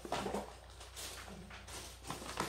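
Faint handling noise: a few soft knocks and rustles as a plastic bag of frozen meat is pushed into place in a freezer.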